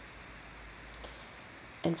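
Quiet room tone in a small room with a single short click about halfway through, then a woman starts speaking near the end.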